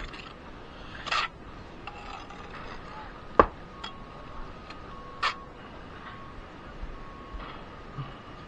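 Steel brick trowel scraping and scooping mortar on a mortar board and spreading it on bricks, in a few short scrapes, with one sharp knock, the loudest sound, about three and a half seconds in.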